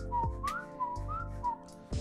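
A quick whistled run of about six short, sliding notes, alternating higher and lower, over quiet background music.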